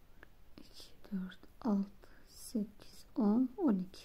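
Only speech: a woman's voice speaking quietly in a few short phrases.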